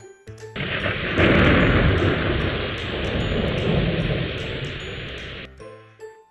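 Thunderstorm sound effect: a heavy rush of rain with a rumble of thunder that swells about a second in and slowly fades, ending abruptly near the end, over light children's background music.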